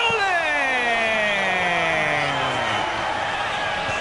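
A sports commentator's single long, drawn-out exclamation of dismay, sliding steadily down in pitch over about three seconds, over stadium crowd noise. It is a reaction to a shot that has just missed.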